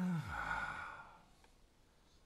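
A man's short, pitched 'hmm' that runs into a breathy sigh, fading within the first second.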